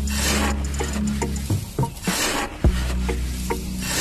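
A small metal scoop scraping through sand and tipping it into a little aluminium cup, two rasping scrapes, one near the start and one about two seconds in, with light clicks. Background music runs underneath.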